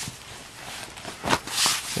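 Black fabric messenger bag rustling as it is handled, with a few short scuffs and rubs, the loudest near the end.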